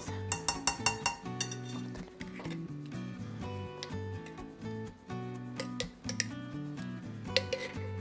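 Metal spoon clinking against a glass bowl and jar while mayonnaise is scooped and dropped into the bowl: a quick run of clinks in the first second or so and a few more near the end. Light background music plays underneath.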